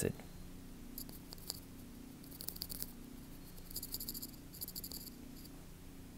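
Faint scratching and tapping of a stylus writing by hand on a tablet screen, in several short runs, over a low steady hum.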